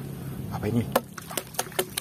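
A plastic toy hammer slapped into shallow muddy water, making a quick run of about five or six splashes in the second half as it is washed.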